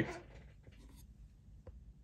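Quiet room tone with a faint low hum and a faint scratchy noise, broken by one short, soft click near the end.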